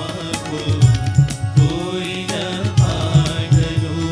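Telugu devotional song performed by a bhajan group, voices singing over a rhythmic hand-drum beat.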